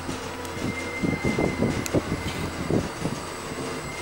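Otis traction elevator car in motion: a steady low hum with a thin high whine that comes in about a second in and holds, and irregular low knocks and rumbles in the car.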